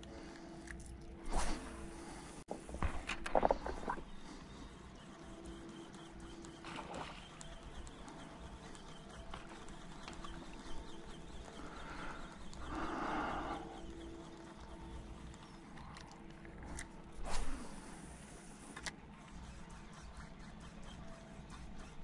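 Faint outdoor ambience by a river, with a few light knocks and clicks scattered through it and a faint hum that comes and goes.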